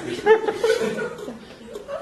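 Audience chuckling and laughing in a theatre hall, dying away about halfway through.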